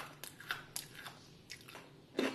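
A series of faint, sharp crunches of a crispy homemade poha kurkure stick being bitten and chewed.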